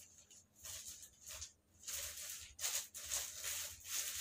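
Clear plastic wrapping crinkling and rustling in several short bursts as it is handled and pulled off a small part.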